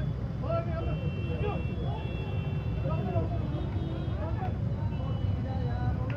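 Several people's voices, unclear and at a distance, over the steady low rumble of street traffic.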